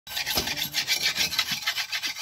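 A steel dodos blade (oil palm harvesting chisel) being sharpened by hand: quick, even scraping strokes of an abrasive against the steel, about six a second.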